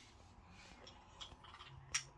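Faint clicks and taps of small plastic toy pieces being handled and pressed together, with one sharper click just before the end.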